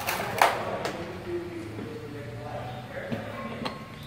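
Steel wheel hub and bearing being shifted by hand on a steel disc jig: a short metal scrape at the start, then a few light metallic clicks.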